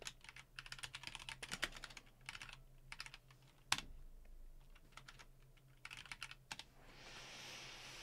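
Faint typing on a computer keyboard: runs of quick key clicks, with one sharper click about halfway and another short run later. A soft hiss follows near the end.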